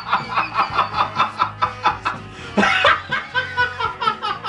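A man laughing hard, a quick run of ha-ha pulses about four to five a second with a louder burst past the middle, over background music.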